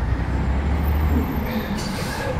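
City street traffic: a low engine rumble from vehicles moving through the intersection, easing after about a second, with a short hiss near the end.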